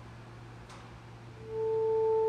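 Solo alto saxophone: a quiet pause, then about one and a half seconds in a single long note starts and is held steady in pitch, slowly growing louder.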